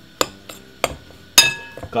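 A metal spoon knocking against a glass mixing bowl while stirring a dry cornmeal mix: four clinks, the last and loudest with a brief ring.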